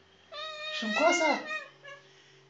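A domestic cat gives one drawn-out meow, rising and then falling in pitch, which the owner reads as a protest at being held.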